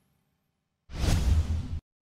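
A whoosh sound effect with a deep rumble beneath it, starting about a second in, lasting just under a second and cutting off suddenly.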